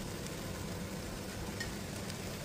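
Faint, steady sizzle of chopped vegetables frying in olive oil in a nonstick pan over low heat.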